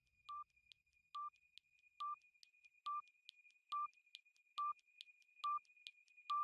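Quiz countdown timer beeping: seven short electronic beeps at one pitch, a little under one a second, each louder than the last, with a faint tick between beeps and a thin steady high tone underneath.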